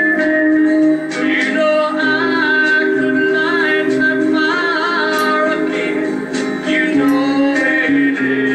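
A man singing a country song into a handheld microphone over a recorded backing track.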